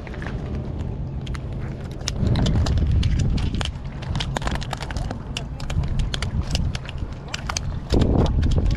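Wind rumbling on the microphone, with many irregular light clicks and taps from scrambling over jetty boulders with a fishing rod.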